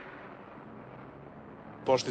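Steady, even rumble of car traffic with no distinct events, as cars drive slowly past. A man starts speaking just before the end.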